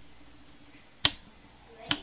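Two sharp clicks, one about a second in and one near the end, from a camera's buttons being pressed to brighten the picture, over faint room tone with a low steady hum.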